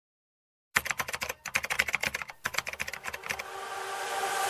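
Computer keyboard typing: a fast run of keystroke clicks with two brief pauses, then a rising hiss that swells toward the end.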